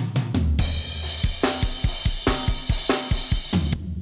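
Playback of a mixed rock drum track: fast kick drum hits under a dense wash of cymbals, with a limiter on the mix bus keeping it out of the red. The playback cuts off just before the end.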